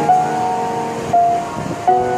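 Background music with held, chord-like notes, the melody stepping to a new note about a second in and again near the end.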